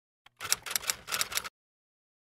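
A quick run of typewriter key strikes, about nine clacks in a little over a second, that then stops dead. It is a typing sound effect laid over text appearing on a title card.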